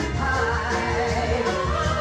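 Soul single played from a 45 rpm record: a full band backing a female singer, with a steady bass under wavering sung or played lines.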